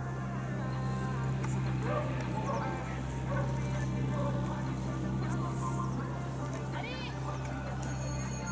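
Indistinct voices in the background over a steady low hum.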